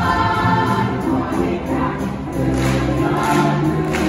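A stage-musical cast singing together in chorus over musical accompaniment, heard from the theatre's audience seating.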